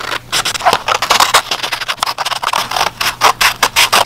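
Scissors cutting through a sheet of paper: a quick, irregular run of crisp snips.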